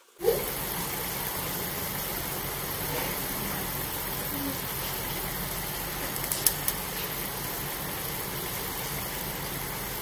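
A steady, motor-like rushing noise that switches on suddenly just after the start and holds level throughout, with a few sharp clicks about six and a half seconds in.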